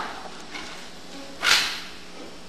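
A single sharp smack about one and a half seconds in, dying away quickly in the theatre's echo. It follows the fading tail of a similar smack at the start.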